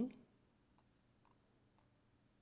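A few faint computer mouse clicks, about three spread across two seconds, between pauses in speech.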